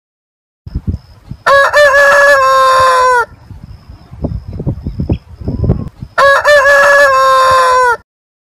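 A rooster crowing twice, each crow loud and almost two seconds long, trailing down in pitch at the end. Soft low knocks and rustling come between the crows.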